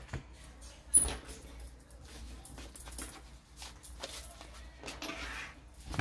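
Quiet handling noises in a small room: a sharp click about a second in, then faint, scattered rustling.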